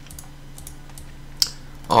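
A few sparse, light clicks from a computer keyboard and mouse over a low steady hum.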